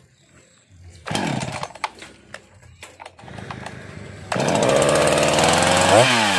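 Husqvarna 353 two-stroke chainsaw being started: a short loud burst about a second in, a few sharp clicks, then the engine catches about four seconds in and runs steadily and loudly.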